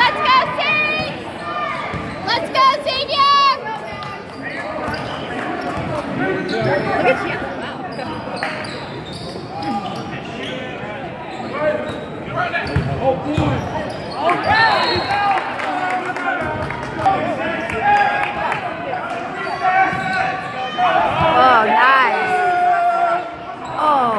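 Basketball being dribbled on a hardwood gym floor, with sharp repeated bounces echoing in the hall, over the chatter of spectators' voices.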